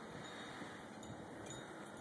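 Quiet outdoor background noise with a few faint, high chime tones.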